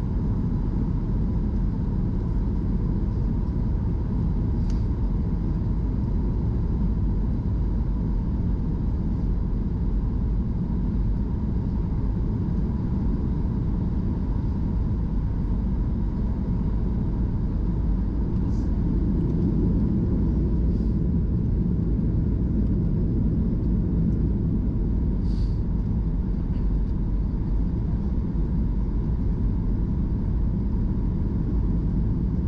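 Steady cabin rumble of a Boeing 737 MAX 8 airliner in flight, with engine and airflow noise heard at a window seat over the wing, flaps extended for the approach. A faint steady hum runs under it, and a few faint brief ticks come about 5 s in and in the second half.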